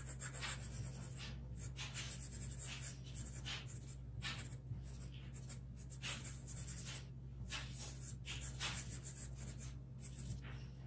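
A pen-shaped blending tool rubbing charcoal powder into drawing paper in short repeated strokes, about two a second, over a steady low hum.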